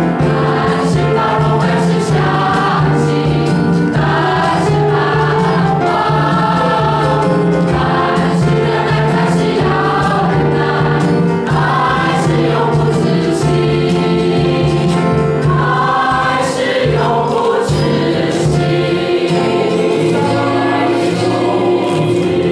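A mixed church choir of men and women singing a hymn together, loud and continuous.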